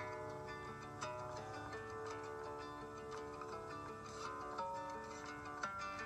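Instrumental music played on a plucked string instrument: a melody of ringing picked notes over a steady low hum.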